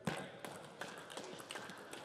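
Table tennis ball in a rally, clicking sharply as it is struck by the rackets and bounces on the table, a click about every 0.4 s.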